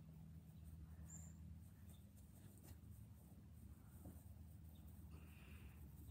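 Near silence: a faint, steady low hum of background room tone, with a few tiny faint ticks.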